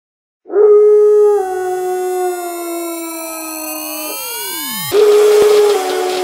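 Dubstep track intro: a long, howl-like held tone that steps down in pitch, with rising and falling synth sweeps crossing it. A falling sweep dives away about five seconds in, and a noisy hit brings the howl-like tone back with a rhythmic pulse behind it.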